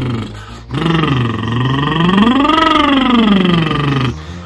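A man's lip roll (lip trill) vocal warm-up: lips buzzing while he voices a sliding pitch. A first note ends just after the start, then after a brief break a longer one dips low, glides up to a peak past the middle and slides back down.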